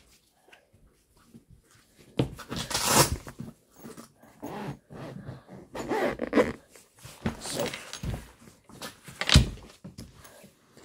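Irregular rustling and rubbing of an arm and packaging right against the phone's microphone, in short bursts with a sharp knock about nine seconds in.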